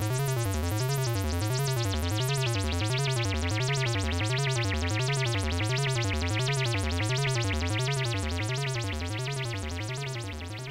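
DIY modular analogue synth played through an MS-20 style voltage-controlled filter: a low, buzzy tone whose pitch wavers up and down about twice a second, with a fast pulsing edge in the upper range. It fades down over the last couple of seconds.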